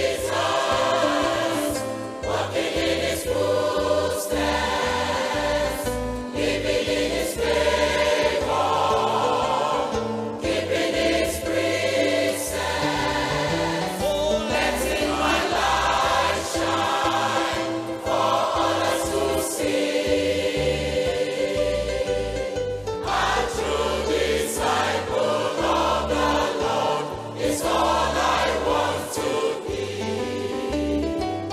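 Mixed church choir singing a gospel hymn, with a bass line and percussion strokes beneath the voices.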